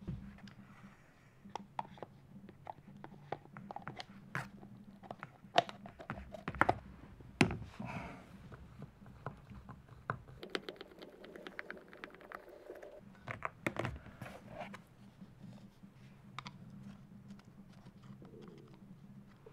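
Hand-work on the plastic gear housing of a Makita HR2400 rotary hammer as it is greased and reassembled: sharp clicks and knocks of a wooden stick and a screwdriver against the housing, with a longer stretch of scraping past the middle. The loudest knocks come about a third of the way in, over a faint steady low hum.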